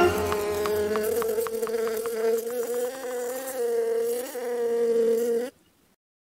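Cartoon bee buzzing sound effect: a steady, slightly wavering buzz with light clicks in the first half, cutting off suddenly near the end.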